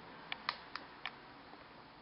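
Four light clicks in quick succession within about the first second: a baby's hand tapping at the plastic tray of her high chair.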